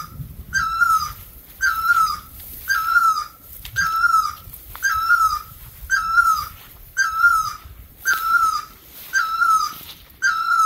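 An animal call repeated at an even pace, about once a second: each a short, slightly falling, buzzy note, ten in a row.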